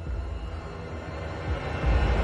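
Tense film score: a low, droning suspense cue with faint held tones, swelling louder just before the end.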